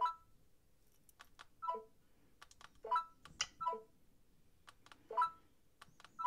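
A string of about five short electronic blips from an iPhone, with faint clicks of the remote's buttons between them. They are the signal that pressing the Babul remote's left and right arrows together has switched the remote off or back on through its keyboard shortcut.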